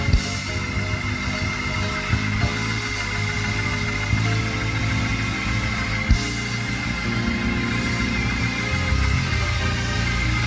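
Live church band music: sustained keyboard chords over a deep bass line, with a few sharp percussive hits about two seconds apart.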